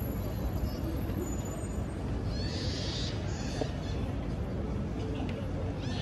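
Busy city street ambience: a steady low rumble of traffic with faint voices of passers-by, and a brief hiss about two and a half seconds in.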